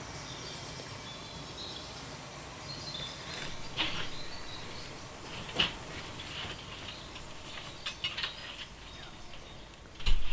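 Faint scuffing and rustling of someone searching by hand across a debris-strewn floor, with a few short knocks or scrapes, the clearest about four and five and a half seconds in, over a quiet background hiss.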